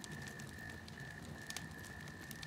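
Faint crackling of a wood fire: scattered small pops and ticks over a low hiss, with a steady faint high whine underneath.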